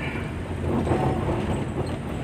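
Steady low engine and road noise heard inside a moving car's cabin.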